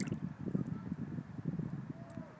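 Wind buffeting the microphone, an irregular low rumble, with a short sharp click at the start.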